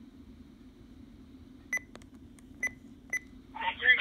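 Three short, high beeps from a RadioShack Pro-668 handheld digital scanner, over a faint steady hiss, as playback moves from one recorded transmission to the next. A radio voice starts near the end.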